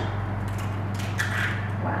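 Egg being pulled open over a steel mixing bowl, with faint small clicks of shell handling over a steady low hum.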